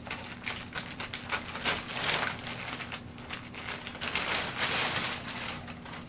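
Brown kraft packing paper crinkling and rustling as a kitten moves around inside it: a crackly run of small rapid clicks, with louder bursts about two seconds in and again between four and five seconds.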